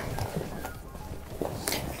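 Faint rustling of an air mattress's fabric as it is squeezed and folded to force the air out, over quiet background music.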